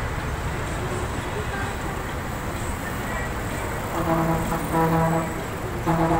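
Steady street traffic noise, and from about four seconds in a vehicle horn sounds in short honks of one steady, low pitch, two in quick succession and a third near the end.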